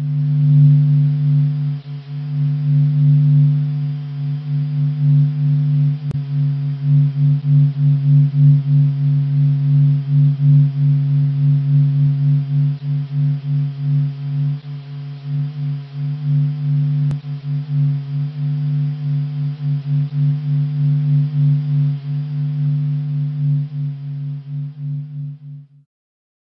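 The 'singing sun': solar signals processed into audio, a steady low hum with several overtones above it, its loudness wavering rapidly. It is the Sun's vibration made audible, and it fades out near the end.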